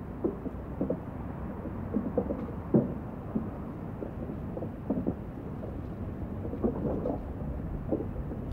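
Muffled low rumble of an old film's soundtrack playing on a TV in another room, dulled as if through a wall, with faint brief indistinct sounds every second or so.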